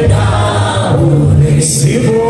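A small group of gospel worship singers singing together through the PA, voices held on long notes over sustained low bass notes.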